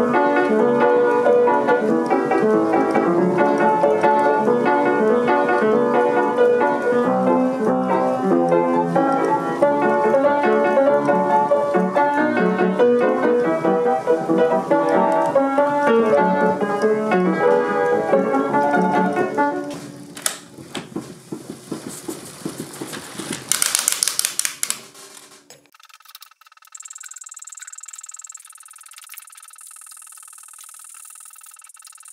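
Piano music with dense, busy notes and chords, fading out about twenty seconds in. A click and a short burst of hiss follow a few seconds later.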